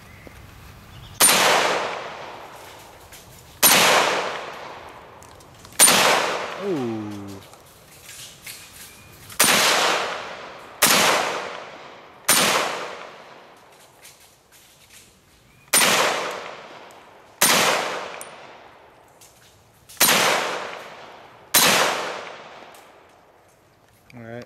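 Auto Ordnance M1 Carbine in .30 Carbine firing ten semi-automatic shots at an uneven pace, one every one and a half to three and a half seconds. Each sharp crack is followed by a long echo that dies away before the next shot.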